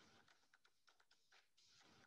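Near silence: faint room tone with scattered soft, irregular clicks.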